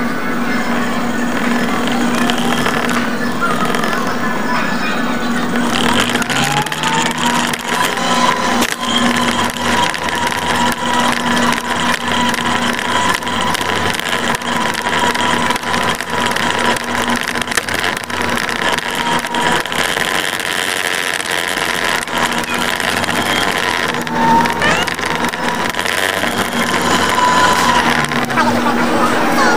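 Electric mobility scooter's motor whining as it drives through a supermarket, over a steady lower hum. The whine rises in pitch about six seconds in, holds steady, and dips briefly near the end. Store background chatter runs underneath.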